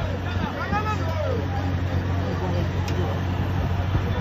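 Onlookers exclaiming "Oh!" and chattering, the calls strongest in the first second or so, over the steady low drone of a vehicle engine running.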